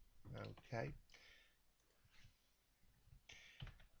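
A few faint clicks of a computer mouse and keyboard near the end as a cross is entered in a table; otherwise near silence.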